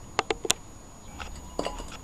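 Three quick, light clicks close together in the first half second, then a couple of fainter taps.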